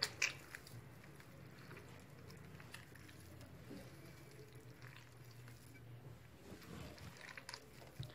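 A hand kneading soft margarine, icing sugar and vegetable oil in an earthenware bowl: faint, wet squishing of the creaming butter mixture. There are a couple of sharp clicks right at the start.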